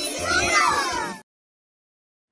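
Cartoon title-card jingle: music with squeaky, gliding, meow-like cute voices. It cuts off suddenly just over a second in.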